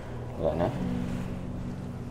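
A woman in labor gives one short groan about half a second in, through a contraction, over a steady low hum.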